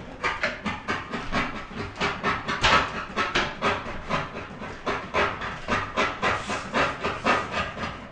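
A dog barking over and over in quick, regular barks, about three a second.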